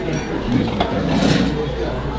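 Indistinct voices talking in a busy restaurant dining room, with a brief scratchy noise a little over a second in.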